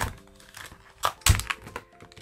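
Stiff clear plastic blister packaging being pried open by hand: a few sharp crackles of the plastic, the loudest just after a second in. Quiet background music runs underneath.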